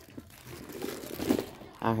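Plastic wrapping on a new handbag crinkling as the bag is picked up and handled, a soft irregular rustle. A woman's voice comes in near the end.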